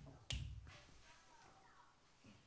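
A single sharp click with a low thump about a third of a second in, then faint rustling: a handling noise.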